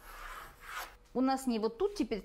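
A pencil drawn along a ruler across paper makes one scratchy stroke of about a second. A woman starts speaking a little past the one-second mark.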